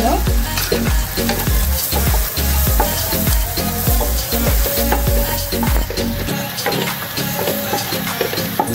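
Spatula stirring and scraping sausage, peas and egg around a nonstick frying pan in quick repeated strokes, over a steady frying sizzle.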